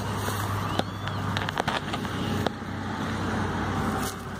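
Rustling and crackling of dry grass and brush underfoot, with handling noise from the phone and a mesh bag, and a few sharp clicks in the first half and one about two and a half seconds in.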